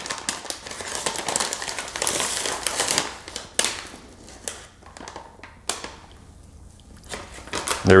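Plastic pouch of powder crinkling and rustling as a measuring cup is dug into it for a scoop, loudest in the first three seconds, then lighter rustles and small clicks.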